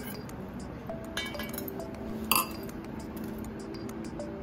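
Steel spoon clinking against a glass bowl a few times, the loudest clink a little over two seconds in.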